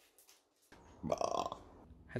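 Near silence, then about a second in a short, croaky sound from a person's throat, over a faint low hum.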